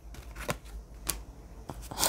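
A deck of cards being handled as one card is drawn from it: three faint flicks of card stock, about half a second apart.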